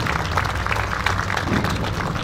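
A small seated audience applauding steadily, many hands clapping.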